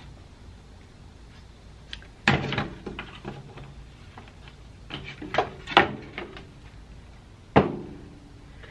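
Wooden boards and a clamp being handled on a bandsaw table while the saw is stopped: a few separate knocks and thumps, the loudest about two seconds in and again near the end.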